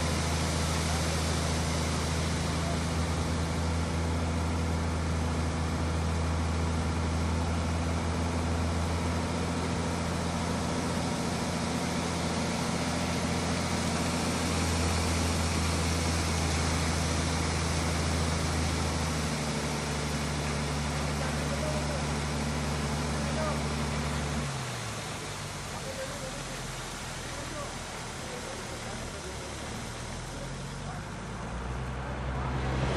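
Tata SE 1613 tipper's diesel engine running steadily to drive the hydraulic hoist as the loaded body tips and gravel slides out of the tail. The engine note shifts about two-thirds of the way through and then drops away near the end, leaving a quieter hiss.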